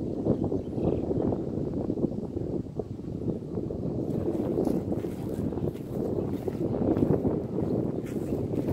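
Wind buffeting the microphone, a steady low rumble, with faint footsteps on dry grass and leaf litter ticking through the second half.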